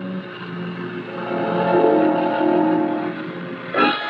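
A steady pitched drone on an old, narrow-sounding film soundtrack. Several held tones swell about a second in and fade just before the end, where a short voice-like burst cuts in.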